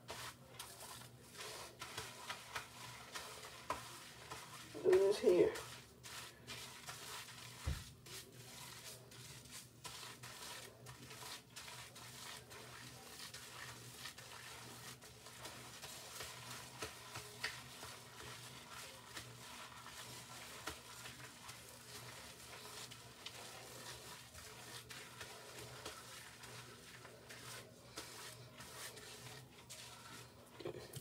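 Hands rubbing and squishing soapy lather through short hair: a faint, steady crackle with many small clicks. A brief vocal sound comes about five seconds in.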